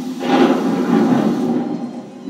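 A noisy rushing surge from the pre-show video's soundtrack, heard through the screen's speakers in a room. It swells a moment in and fades away after about a second and a half.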